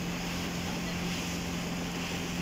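Motorboat engine running steadily, a constant low hum, with wind and water noise.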